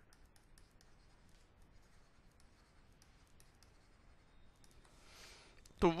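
Faint, irregular clicks and light scratches of a stylus on a writing tablet as words are handwritten. A breath near the end, then a man starts to speak.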